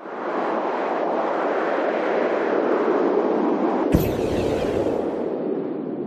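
Cinematic sound-effect rumble for a closing logo: a dense rushing noise that cuts in suddenly, with one sharp crack about four seconds in, easing off afterwards.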